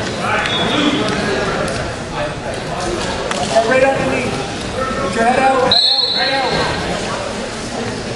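Voices of coaches and spectators calling out in a large gymnasium hall, echoing, with occasional thumps. A short high tone sounds about six seconds in.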